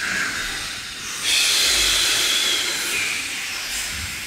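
A group of people breathing audibly in a breathwork session: a long hissing breath swells in about a second in and lasts over two seconds, with the next one starting near the end.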